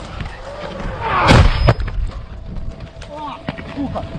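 A shell explodes close by about a second in, a loud blast followed shortly by a second sharp crack. Brief shouts come before and after it.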